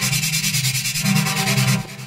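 Xfer Serum software synthesizer playing a held note on a synth patch, chopped by a quick fluttering stutter from its LFOs and run through Serum's multiband compressor. The note stops shortly before the end.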